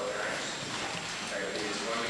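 Indistinct voices talking.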